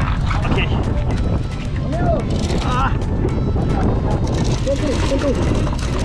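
Short shouted calls from people on a fishing boat over a steady low rumble of boat and wind noise.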